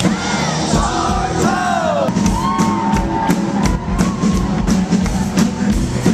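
Loud live rock music from a band: a singer over a steady bass and drum beat of about three beats a second, with the crowd yelling along.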